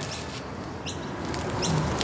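A small bird chirping twice, short quick upward chirps about a second apart, over a steady outdoor background and a few faint clicks from the latch of a meter box being fastened.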